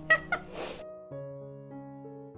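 A woman's brief high-pitched vocal sound and a breathy puff as she reacts to a bite of cake. About a second in, soft background music of held keyboard notes comes in.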